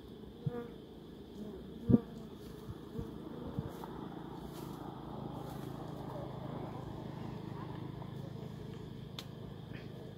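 Dwarf honey bees buzzing around their open comb as it is being cut, the hum swelling after a few seconds. A few sharp knocks come early on, the loudest about two seconds in.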